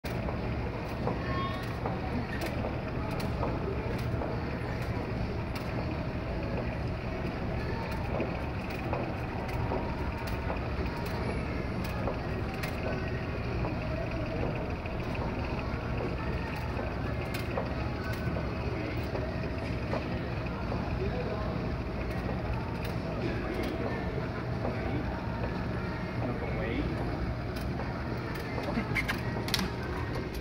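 Steady low hum of a large store's machinery, with indistinct voices murmuring in the background and scattered light clicks.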